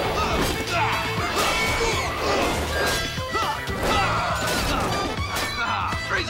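Fight sound effects: a rapid string of punch, whack and crash impacts, over background action music.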